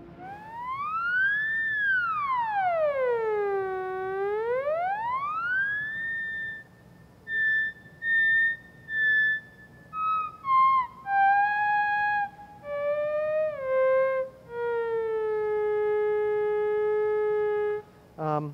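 Big Briar theremin playing one gliding tone. It swoops high, down low and back up over the first six seconds, then sounds in short notes cut in and out by the volume hand, stepping down in pitch to a long low note held near the end.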